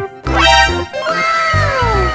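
Upbeat background music with a steady bass beat. About a second in, a long falling glide in pitch sounds over it.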